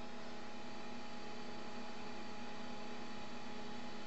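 A steady low electrical hum, with a few faint thin higher tones over it.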